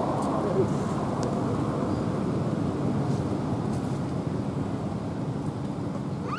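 Steady low rumbling noise outdoors, like wind buffeting the microphone.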